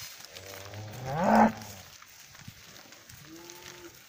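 Black Angus cattle mooing. One long call starts low, rises in pitch and is at its loudest about a second and a half in. A fainter, higher, shorter moo follows near the end.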